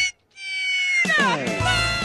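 Comedy sound effect dropped into the edit: one long pitched, cat-like wail that drops sharply in pitch about a second in, then holds, with a low rumble under it near the end.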